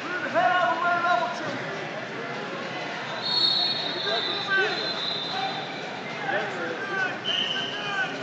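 Voices shouting and calling across a large hall during a wrestling bout, the loudest burst of shouting in the first second or so. A steady high-pitched tone sounds for over a second about three seconds in.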